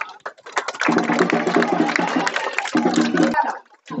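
Crowd clapping, a dense patter of claps over a steady low droning tone. It breaks off abruptly twice.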